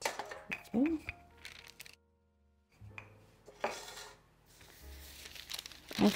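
Parchment paper crinkling and rustling as it is handled and smoothed over rolled-out dough on a stone countertop, with a few light knocks in the first second as a metal springform pan and a wooden rolling pin are moved. The sound cuts out for a moment about two seconds in.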